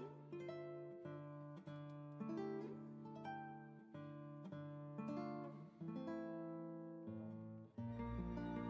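Background music: an acoustic guitar playing picked notes and chords, each note ringing and fading before the next. Right at the end the music moves into a new, softer passage.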